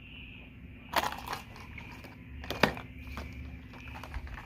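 Plastic blister packs of crankbait lures crinkling and clicking as they are handled, with two sharper clicks, one about a second in and one a little past halfway.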